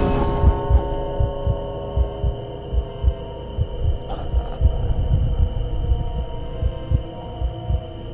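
Trailer sound design: a slow heartbeat of low thumps, mostly in pairs, repeating under a steady drone of several held tones. A faint brief shimmer sounds about four seconds in.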